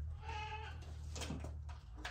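A goat bleating once, a short call of about half a second, over a low steady hum.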